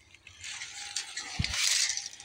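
Handling noise from a steel tape measure and a sheet-metal truck visor being moved, a light rustling rattle with a dull bump about one and a half seconds in.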